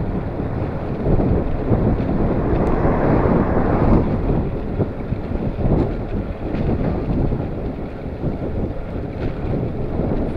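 Wind buffeting the microphone of a handlebar-mounted camera on a moving bicycle, a steady low rumble that swells about three to four seconds in.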